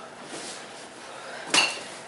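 Metal walker-style exercise frames knocking and rattling as people kick while gripping them, with one sharp metallic clank and a short ring about one and a half seconds in.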